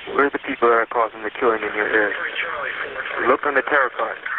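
Speech only: a caller's voice on a recorded telephone call, heard through the line, saying that they are responsible for the shootings in the area.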